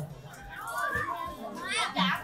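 Background voices of guests in a hall, with children calling out in high, sliding voices and a falling squeal near the end.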